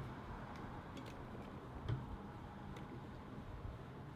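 Quartered onion pieces being dropped into a stainless steel pressure-cooker pot onto raw beef tongue: a few faint, scattered light taps, the clearest about two seconds in.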